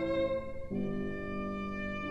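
Solo violin playing long bowed notes over piano accompaniment, with the notes changing to a new chord about two-thirds of a second in.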